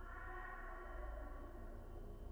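Eerie horror-film score: a cluster of high ringing tones comes in sharply and fades away over about a second and a half, over a steady low drone.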